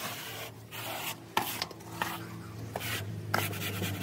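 Long-handled floor squeegee pushed in short repeated strokes across the wet steel floor of a trailer bed, scraping and rubbing, about six strokes in four seconds. A steady low hum runs underneath.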